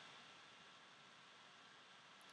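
Near silence: a faint steady hiss of room tone.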